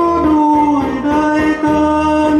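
A man sings long held notes into a microphone over a karaoke backing track with a steady drum beat. There is a brief break in the voice about a second in.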